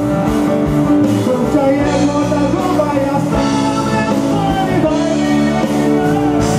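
Live band music with a man singing into a handheld microphone, an electric guitar among the backing instruments.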